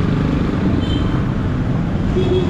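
Steady road traffic noise from motor vehicles in a city street, a continuous low rumble with no single event standing out.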